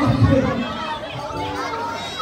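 Crowd chatter: many children and adults talking and calling out at once.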